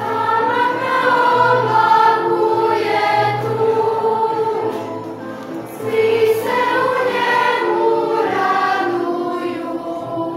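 Children's choir singing: many young voices holding sustained notes in phrases, easing off about halfway through and swelling again about six seconds in.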